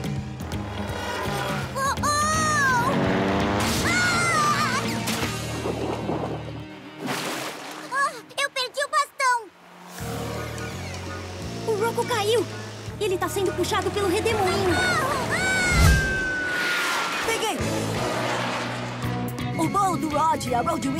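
Background music from a cartoon score, with short character exclamations and water-splash sound effects over it; a low thud about sixteen seconds in.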